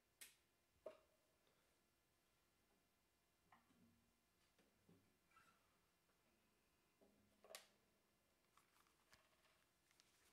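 Near silence: room tone with a few faint, scattered clicks and knocks of equipment being handled, the two sharpest in the first second and another about seven and a half seconds in.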